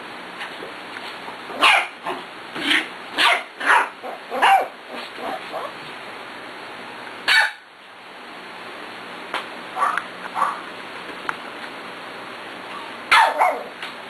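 Pembroke Welsh Corgi play-barking: a quick run of short, sharp barks in the first few seconds, then single barks spaced a few seconds apart.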